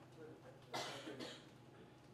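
A person coughs once, sharply, about three-quarters of a second in, over a steady low hum in the room.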